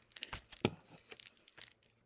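Faint crinkling and crackling of paper, with a few sharp clicks, the loudest two about a third and two-thirds of a second in, as a page is handled.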